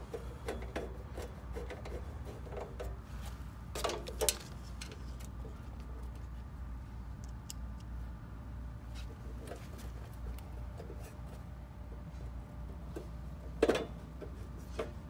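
Small clicks and knocks from a 5/16-inch nut driver tightening the nut screws on the metal panel of a pool-timer box and being handled, with two louder knocks about four seconds in and near the end, over a steady low hum.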